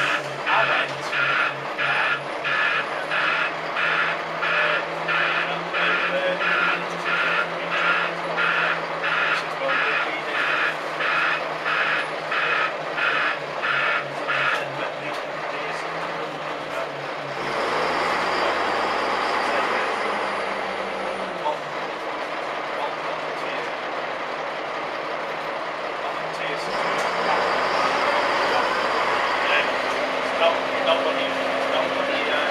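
A bus's reversing beeper sounds steadily about one and a half times a second for roughly the first fifteen seconds over the idling diesel engine. The beeping then stops and the engine note rises, and it grows louder again near the end.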